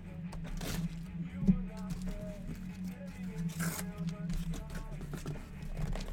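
A sealed cardboard case being opened: packing tape ripped and cardboard flaps scraping, with two short rips, one about a second in and one a few seconds later, over faint background music.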